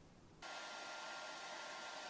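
Hair dryer running steadily, a faint airy hiss with a thin steady whine in it, cutting in suddenly about half a second in.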